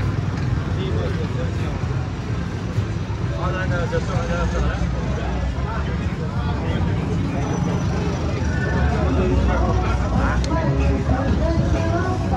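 Busy street ambience: people talking close by over a steady low rumble of vehicle traffic.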